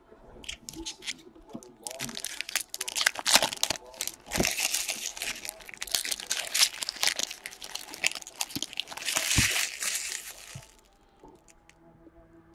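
Foil trading-card packs being torn open and crinkled by hand: dense crinkling and tearing of the wrappers from about two seconds in, stopping near the end, with two dull knocks in between.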